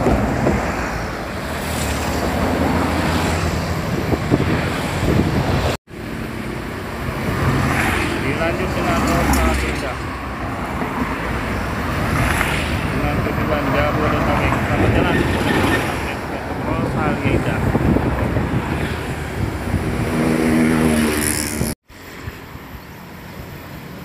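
Large tour buses and other road traffic passing close by: engine and tyre noise that swells and fades as each vehicle goes past. The sound breaks off abruptly twice at edit cuts, and is quieter after the second.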